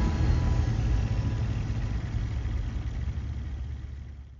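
A low, rough engine-like rumble, like a heavy vehicle idling, fading out steadily.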